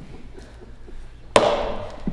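A single sharp, loud bang about a second and a half in, dying away over about half a second in the hall's echo.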